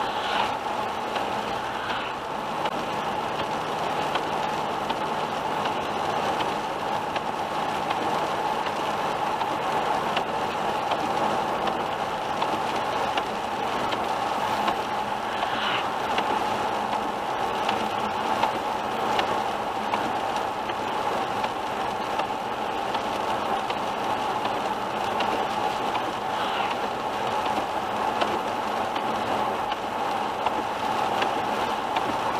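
A car driving on a wet highway in rain, heard from inside the cabin: steady tyre and road noise, with a few brief swishes of the windscreen wiper.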